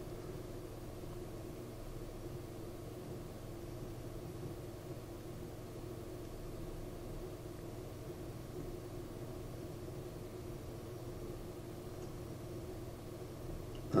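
Steady low background hum with a faint hiss, unchanging throughout, with no distinct events.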